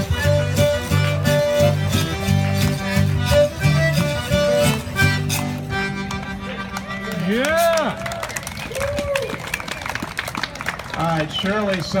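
Live zydeco band playing a tune over a steady repeating bass line, which ends about halfway through. Then come voices, with a couple of rising-and-falling calls.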